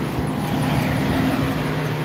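Steady road traffic noise with a low, even engine hum from vehicles on the road alongside.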